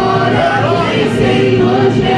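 A group of young voices singing a worship song together into microphones, continuous and loud, with the sung notes shifting in pitch.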